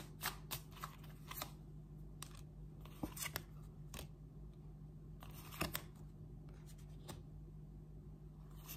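A deck of tarot cards being shuffled by hand: a series of short, separate snaps and rustles of card on card, with brief quiet gaps between them.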